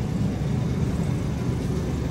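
Steady low rumble with a hiss above it: store background noise while moving down an aisle.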